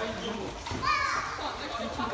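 Young children's voices chattering and calling out, with one high-pitched child's call rising and falling about a second in.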